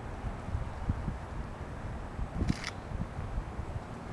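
Handheld camera handling noise with low wind rumble on the microphone, and a brief hiss about two and a half seconds in.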